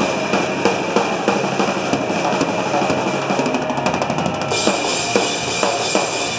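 Pop-hardcore band playing live at full volume: pounding drums with bass and distorted guitars. A quick drum roll comes a little past the middle.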